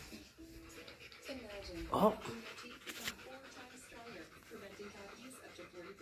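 A dog panting close by while a television plays speech faintly in the background.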